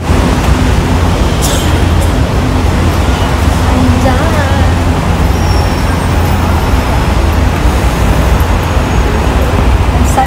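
Steady low rumble of road traffic, with faint voices in the background around the middle.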